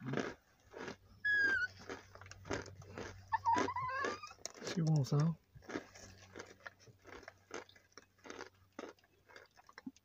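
Cornstarch being chewed, a dry crunching with many short irregular cracks. A small dog whines in high, falling cries about a second in and again around four seconds in.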